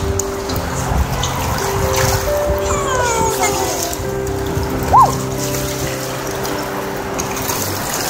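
Water splashing and churning as a crowd of large catfish and carp thrash at the surface, feeding on bread. Music with long held notes plays along with it, and a short high note stands out about five seconds in.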